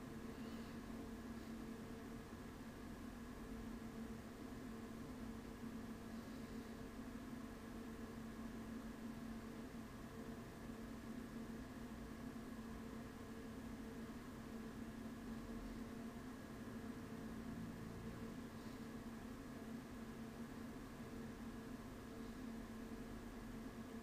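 Faint room tone: a steady hiss with a low, constant hum.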